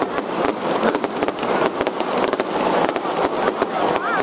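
Fireworks going off: a dense, irregular string of sharp cracks and pops, several a second.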